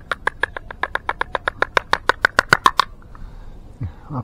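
Small metal tuna tin rapped rapidly and repeatedly, about nine sharp metallic clicks a second for nearly three seconds, to knock the tuna out of the upturned can.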